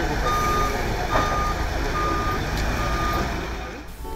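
Hyster LPG forklift's backup alarm beeping, four single-pitch beeps about a second apart, over the low steady running of its engine.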